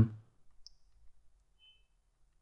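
Near silence after the end of a spoken word, broken by one faint short click about half a second in and a brief, faint high tone near the end.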